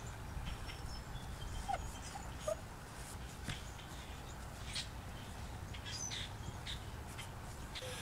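Faint outdoor ambience: a steady low rumble with a few faint, short chirp-like calls and soft rustles as PVC pipe is handled.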